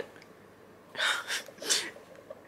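A woman sighing: three short, breathy, unvoiced puffs of breath, starting about a second in.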